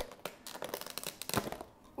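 Clear plastic lid of a takeout container being handled and pried open: a run of light crinkling clicks and crackles, with a sharper snap about one and a half seconds in.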